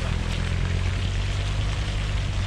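An SUV's engine running with a steady low hum as the vehicle drives slowly just ahead and pulls away.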